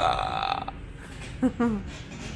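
A man's loud open-mouthed yell, held for about half a second, then a short voice sound about a second and a half in that falls in pitch.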